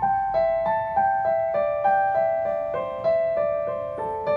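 Yamaha digital piano played slowly with one hand: single notes struck evenly, about three a second, each ringing into the next, stepping down the Chinese pentatonic scale in overlapping four-note groups (do-la-sol-mi, la-sol-mi-re, sol-mi-re-do).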